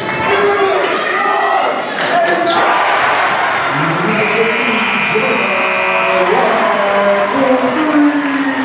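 Live basketball game sound in a gym: a ball dribbled on the hardwood court with a few sharp strikes, under steady shouting voices. A high steady tone holds for about two seconds midway.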